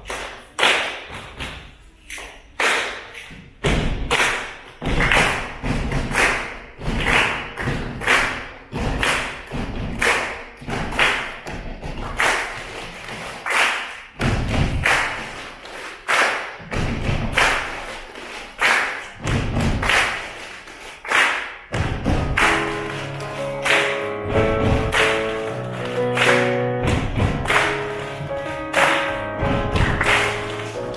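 A group keeping a steady beat with hand claps and thumps, like body percussion. From about two thirds of the way through, digital piano chords join the beat.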